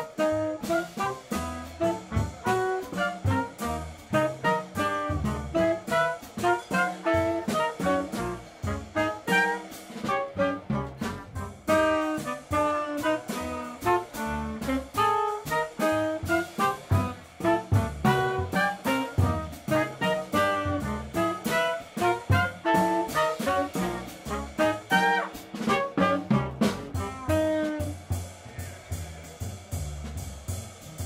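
Live jazz quartet: tenor saxophone and trumpet playing a melody together over upright bass and drum kit. The horns stop near the end, leaving bass and drums.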